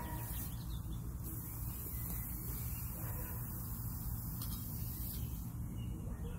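A steady low hum of outdoor background, with a few faint soft scrapes of gloved hands working soil around a freshly planted canna lily.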